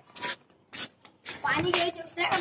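Handling noise from a phone held close to the floor: fingers rub and scuff over the microphone in a few short scrapes. A voice comes in over it in the last half-second or so.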